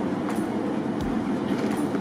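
Steady mechanical rumble of a cruise ship's machinery, heard on its open deck, with a faint regular tick about every three quarters of a second.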